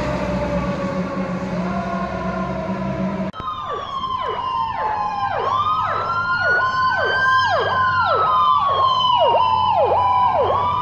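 Emergency vehicle sirens. A slowly gliding siren wail over an engine hum gives way suddenly, about three seconds in, to two sirens at once: one wailing up and down slowly, and another sweeping sharply downward about twice a second.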